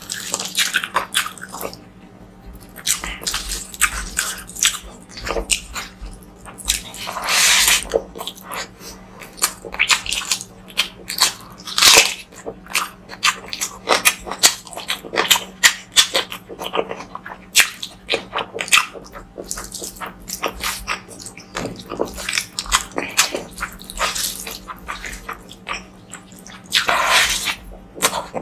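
Close-miked eating sounds as rice, curry and a boiled egg are eaten by hand: a rapid, continual run of wet chewing, lip smacks and mouth clicks, with a few longer, wetter sounds about 7 and 12 seconds in.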